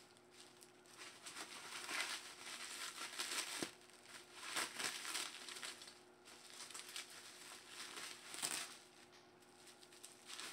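Bubble wrap crinkling and rustling in irregular bursts as a wrapped baseball bat is lifted out of a packed cardboard box and unwrapped.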